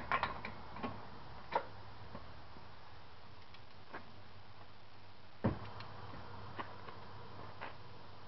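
Scattered light metallic clicks of a ratchet and socket being worked on a car's front CV axle nut, coming singly a second or more apart. The loudest click is about five and a half seconds in.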